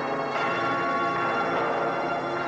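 Church bells ringing, many overlapping steady tones with fresh strikes about a third of a second in and again near the end.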